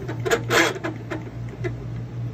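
Mini-mill's table being cranked by hand: a run of metallic clicks and clunks, the loudest about half a second in, over a steady low hum.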